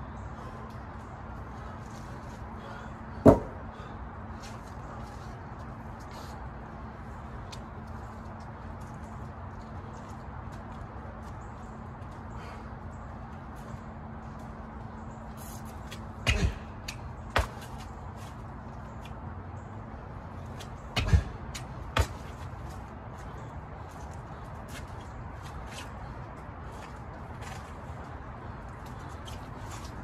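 Scattered sharp thumps from a workout, five in all: one loud one early, then two pairs that fit jumping onto and down off a stack of large tyres during box jumps. A steady low hum runs underneath.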